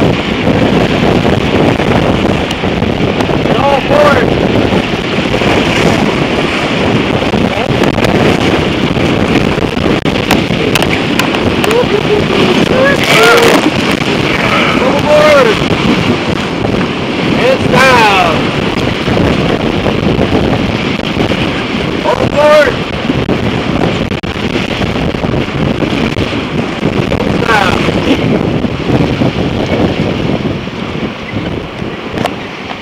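Whitewater rapids rushing loudly and steadily around a paddle raft, with wind buffeting the microphone. Several brief voice calls, each rising then falling in pitch, cut through the water noise.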